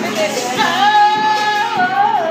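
Karaoke: a woman singing into a microphone over a backing track with a beat, holding one long note from about half a second in that wavers near the end.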